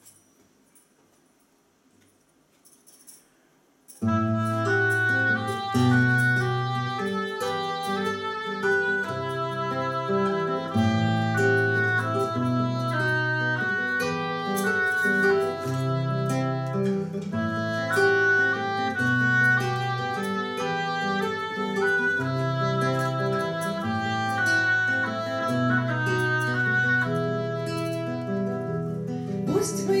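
Near silence for about four seconds, then an acoustic guitar and a woodwind start together and play a song's instrumental introduction. A woman's voice begins singing right at the end.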